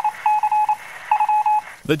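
Electronic beeping on one steady, mid-high tone, in three quick clusters of rapid beeps about half a second apart: a news-bulletin transition sting between stories.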